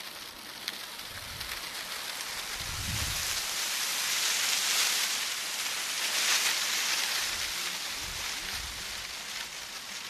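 A rushing, rustling hiss that swells to its loudest in the middle and eases toward the end, with a few low buffets near the start and again near the end: a camera hung beneath a garbage-bag solar balloon swinging hard as the tether line pulls taut.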